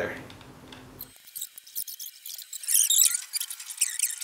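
Hand screwdriver driving small screws into the plates of a homemade camera rig: faint scratchy squeaks and ticks, busiest about three seconds in.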